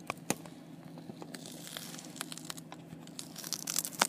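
Phone handling noise as the phone is turned around: scattered clicks and rubbing on the microphone, thickening into a crackling rustle near the end.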